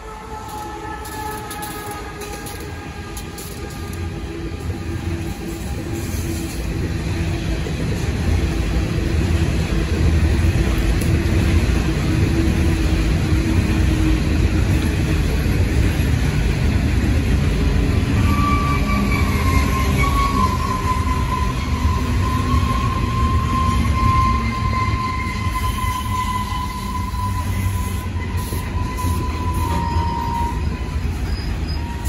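An Aurizon diesel freight locomotive and a long rake of coal hopper wagons roll past. The steady rumble of the wagons' wheels grows louder over the first ten seconds and then holds. From a little past halfway, a high squeal from the wheels sounds above the rumble.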